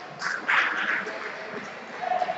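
A brief loud shout from a person, about half a second in and lasting about half a second, over the general background noise of a large hall.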